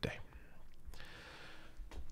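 A man breathing softly into a close microphone, with a faint click about a second in and another near the end.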